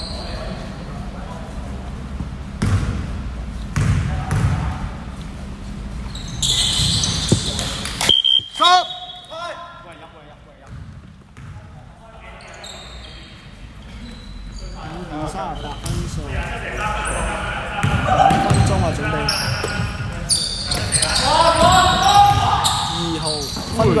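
Basketball bouncing on a sports-hall floor, the knocks ringing in a large echoing hall, with players' voices and shouts that grow busier toward the end.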